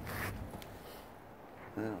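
1951 Douglas 90 Plus 350cc flat-twin engine idling low and cutting out about half a second in, with a brief rustle at the start. A short spoken word follows near the end.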